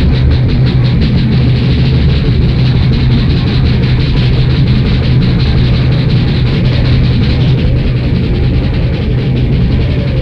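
A live band playing loud, distorted heavy rock: electric guitar, bass and drums, with rapid, steady cymbal strokes.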